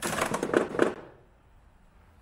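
Keurig coffee maker's lid being lifted open, with a rapid mechanical clatter that stops about a second in as the used K-Cup pod is knocked out into the machine's built-in waste bin.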